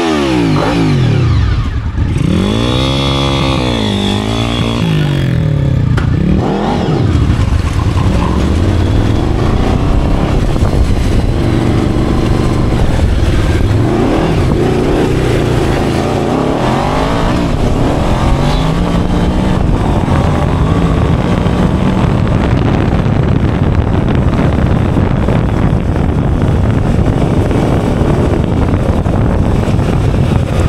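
Engine of a homemade off-road buggy, blipped up and down several times at first, then pulling away and running on with the pitch rising and falling with the throttle while it drives over a sandy track.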